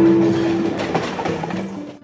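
Electric commuter train moving alongside the platform, its wheels clattering on the rails, with a steady squeal in the first moment. The sound fades away near the end.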